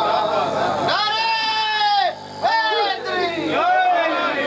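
A man's voice chanting in long, drawn-out, wavering notes, a melodic recitation with a short break a little past halfway.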